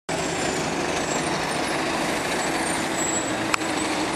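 Steady street noise from road traffic, an even hiss with no single event standing out, and one brief click near the end.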